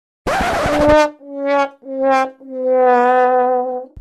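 Comic brass sound effect, trombone-like: a short noisy burst, then four slightly falling notes, the last one held long.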